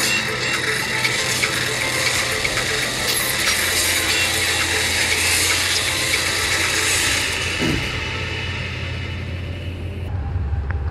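Intro sound effects of clicking, ratcheting gears and metal mechanisms over music, with a steady low drone underneath. The dense clicking thins out and fades over the last couple of seconds.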